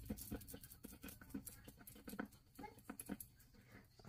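Faint, scattered scratching and tapping of a coin on a scratch-off card, with light card rustling.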